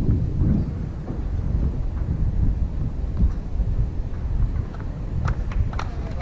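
Wind buffeting the microphone as a steady low rumble. A few sharp, scattered claps from spectators start near the end.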